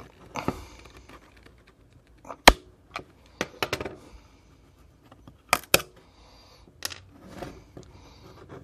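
The plastic casing of an ITEK power bank being prised and squeezed open, with a series of sharp clicks and snaps as it gives way and fainter scraping between them. The loudest snap comes a little over two seconds in, and a close pair near the middle.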